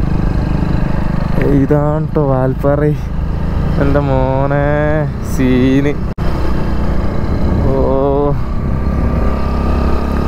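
Steady low rumble of wind and engine noise while riding a Hero Splendor motorcycle, broken briefly about six seconds in. Over it a voice comes in several short bursts, one with a wavering pitch like humming or singing.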